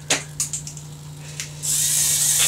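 Modified continuous-rotation hobby servo motors driving a small homemade robot: a few light clicks, then a loud hissing run of motor noise starting near the end, over a steady low hum.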